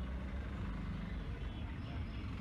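A steady low background rumble and hum with a faint hiss, with no distinct events.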